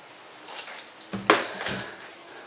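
Light clatter of a hard object being handled and set down: a sharp knock a little over a second in, followed by a few softer knocks and clinks.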